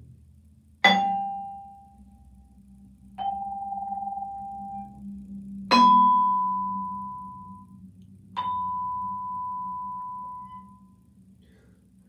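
Musser vibraphone, pedal down, struck four times with a yarn mallet, each note ringing on. Two low bars are each played first as an ordinary note and then as a harmonic, with a finger lightly touching the middle of the bar, so that only a pure tone two octaves higher sounds. The second pair is higher than the first.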